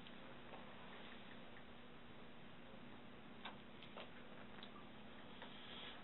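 Near silence: room tone with a faint steady hum and a few faint, scattered clicks in the second half.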